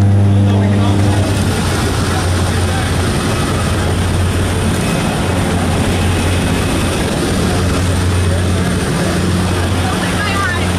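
Steady drone of a propeller jump plane's engines heard from inside the cabin: a constant low hum under a dense rush of air noise that thickens about a second in.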